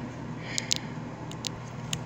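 Camera being handled by hand: a handful of short, sharp clicks and rubs against the microphone over a steady low hum.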